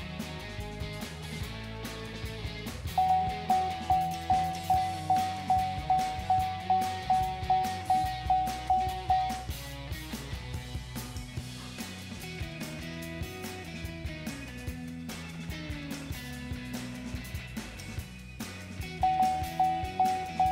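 Background music, over which a truck's dashboard warning chime sounds in a steady series of identical dings, about two a second, for several seconds. The chimes stop, then start again near the end.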